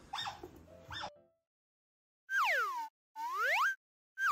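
An edited-in cartoon sliding-whistle sound effect: a pitched tone glides down, then another glides up, each lasting well under a second, after a moment of dead silence.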